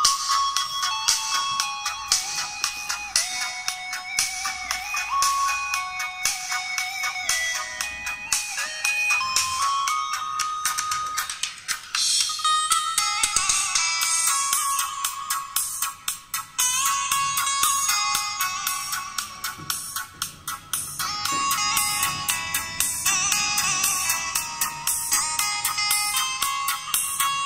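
Music playing through a Pioneer P9 TVK paper-cone tweeter under test, its thin, treble-heavy sound carrying the melody with almost no bass.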